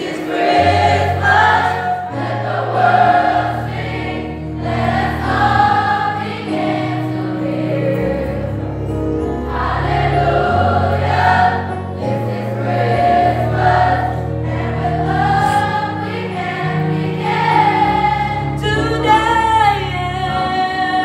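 Youth choir singing a Christmas song, held notes rising and falling, with low sustained bass notes underneath that change every second or two.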